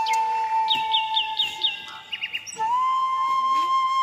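Background flute music holding long, slightly ornamented notes. A quick run of five bird chirps comes about a second in.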